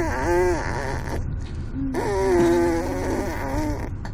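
Baby boy buzzing his lips to imitate a car engine, a pitched 'brrrm' that rises and falls: one ends about a second in, and a longer, steadier one runs from about two seconds in to just before the end. A low steady rumble lies underneath.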